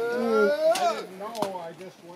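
Voices of onlookers making wordless vocal sounds and exclamations, with two short sharp ticks about three-quarters of a second and a second and a half in.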